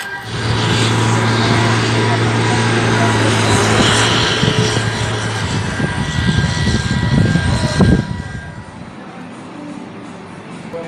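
A steady low engine drone under a loud rushing noise, with uneven low rumbling joining in about halfway through. The sound drops off sharply about eight seconds in.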